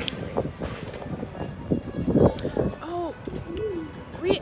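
Handling noise from a handheld phone: fingers rubbing and knocking on the microphone, with the loudest scrape about two seconds in. A few short murmured vocal sounds follow near the end.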